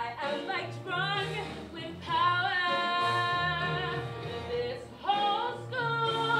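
A solo singer's voice carries a musical-theatre song over a recorded backing track with a steady, pulsing bass line. About two seconds in, the voice holds one long note for a couple of seconds, then starts a new phrase near the end.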